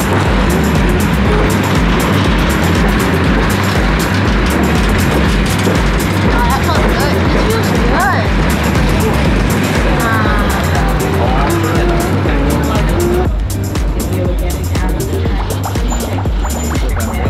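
Heritage Kuranda Scenic Railway train running, heard from inside a carriage: a loud, dense rumble and rattle of wheels on track. Background music and voices run under it, and the running noise thins out about three seconds before the end.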